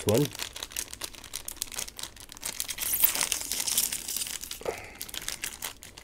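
Plastic wrapper of a Munch Nuts chocolate bar being torn open and crinkled by gloved hands. It crackles throughout, with a longer tearing sound about halfway through.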